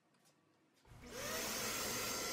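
A shop vacuum serving as the router's dust collection is switched on about a second in: its motor winds up with a rising whine, then runs steadily.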